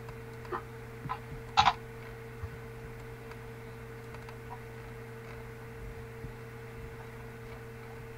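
A steady electrical hum with a few short clicks in the first few seconds. The loudest is a quick double click about one and a half seconds in.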